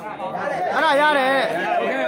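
Voices of several people talking and calling out at once, loud and overlapping.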